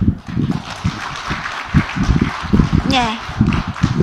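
Audience laughing and clapping for about three seconds, then a voice speaks briefly near the end.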